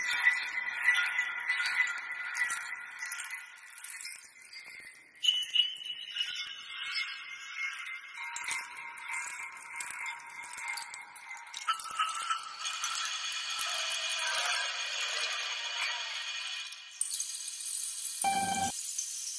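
Sampled bamboo wind chimes from the Soundpaint Windchimes Ensemble's 'Bamboo Horror Movie' preset, played from a keyboard: rattling bamboo clatter over sustained chords. The chords move to new pitches about five, eight, twelve and seventeen seconds in.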